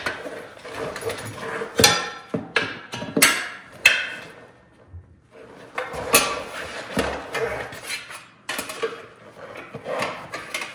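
Steel tire irons clinking and scraping against a spoked dirt bike rim as a knobby tire is levered onto it. There is a run of sharp metal knocks with a short lull about halfway through.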